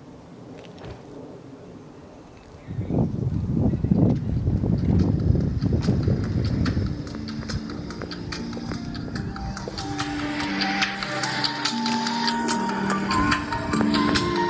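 Music played through a portable Bluetooth speaker starts suddenly about three seconds in, after a faint lull. It opens with a loud, bass-heavy swell, then from about halfway through turns into held notes at several pitches over fast, even ticking percussion.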